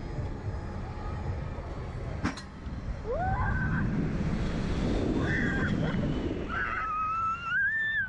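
Slingshot reverse-bungee ride launching: a sharp click about two seconds in as the capsule is released, then wind rushing over the onboard microphone and a rider's screams, each rising in pitch, the last one long.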